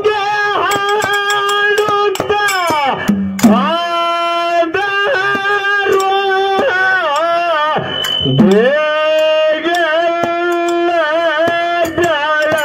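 A man sings a Kannada devotional dollu folk song in long held notes, with sweeping glides and wavering ornaments near the end. Drum beats run under the voice.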